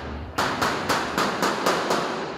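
A quick series of hammer blows on the sheet-metal segments of a large elbow cladding, about three to four a second with a short metallic ring after each, as the seam is knocked together.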